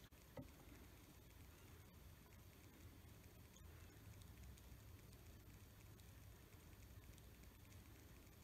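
Near silence: room tone with a low hum and one faint tick about half a second in.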